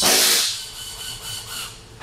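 A metal back-probe pin scraping into a plastic wiring connector as it is moved to the next pin: a brief scrape loudest in the first half second, then fainter rubbing.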